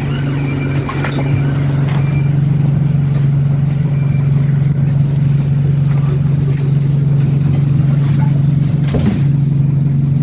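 Bus engine idling steadily, heard inside the bus as a continuous low hum, with a few short clicks and knocks from inside the bus.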